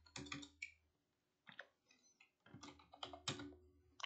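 Faint computer-keyboard typing: a few short runs of key presses as numbers are entered into a calculation.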